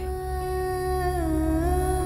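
Background music: a single long hummed vocal note that dips slightly in pitch midway and then comes back up.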